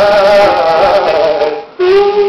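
Singing of a Hindi film song over musical backing, with long held notes that glide down; the vocal phrase ends about a second and a half in and a steady instrumental note takes over near the end.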